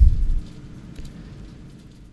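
A brief low rumble on the microphone in the first half second, then a faint steady background hum with a single small click near the middle.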